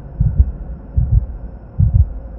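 Heartbeat sound effect in a film soundtrack: low double beats, lub-dub, three pairs a little under a second apart.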